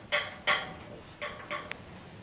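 A few short knocks and clinks of steel as a galvanized box-section rail is shifted into place against a steel frame leg, with two louder knocks early and a sharp click near the end.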